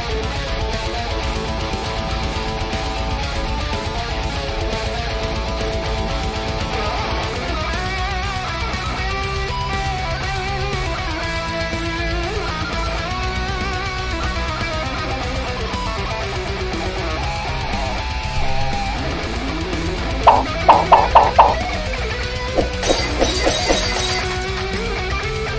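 Heavy metal track with electric guitar, a melodic guitar line weaving over a dense backing. Near the end comes a run of about five loud, sharp staccato hits, followed by a few quieter ones.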